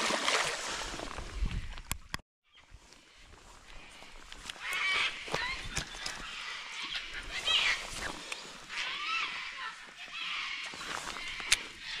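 A released Murray cod splashes loudly as it kicks away into the river. After a brief dropout there is a quieter stretch with a few high bird calls.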